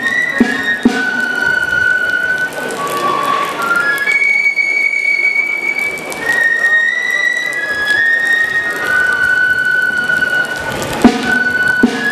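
Basque folk dance music led by a high-pitched flute playing long held notes, with a small drum beating in short strokes near the start and again near the end.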